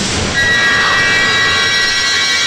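Film background score: a sustained, droning stack of high held tones that swells in about half a second in over a low rumble.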